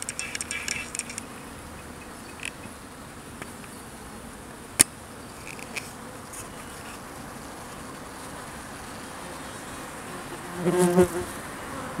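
Honey bees buzzing steadily as they crowd a syrup feeder, with a single sharp click about five seconds in and a brief louder buzz near the end.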